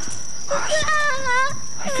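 A baby crying in a few wavering, high-pitched wails that start about half a second in.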